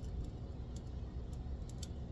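A few faint, light clicks of a metal spatula against a cast iron skillet over a low, steady hum.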